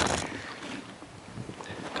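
Rubbing and wind noise on a handheld camera's microphone as the camera is swung about: a loud scuffing rub right at the start, fading to a low rumble.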